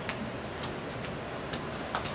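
A small packet of playing cards being mixed by hand: faint scattered clicks of card on card, roughly two a second, over a low room hiss.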